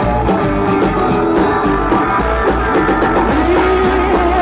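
Live rock band playing an instrumental passage: strummed guitars over bass and drums, with a held note coming in near the end.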